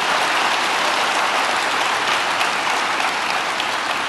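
A large audience clapping steadily.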